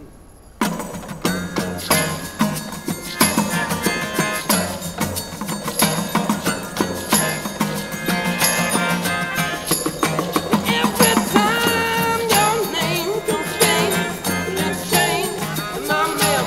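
A small acoustic band starts playing about half a second in, with acoustic guitar, a shaker and maracas keeping a steady rhythm, and saxophone and trumpet.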